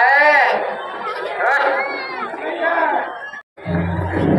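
Voices talking, with the sound cutting out completely for a moment about three and a half seconds in; after that a low steady hum runs under the voices.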